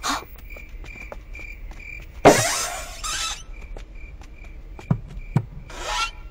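Crickets chirping in a steady slow pulse. About two seconds in comes a loud rush of breathy noise lasting about a second, and a few soft knocks follow near the end.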